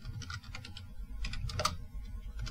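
Computer keyboard being typed on: a quick, irregular run of key clicks as a word is entered, over a low steady hum.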